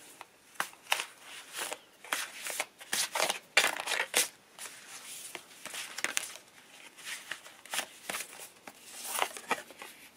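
A stack of stiff Pantone colour cards being shuffled and fanned by hand: irregular papery flicks and rustles, busiest in the first few seconds and again near the end.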